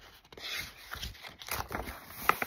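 Paper rustling and scraping as a sticker-by-number book's pages and cover are handled and turned, with a few short scrapes.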